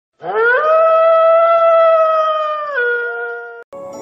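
A dog howling: one long howl that rises in pitch at the start, holds steady, then drops lower near the end before cutting off.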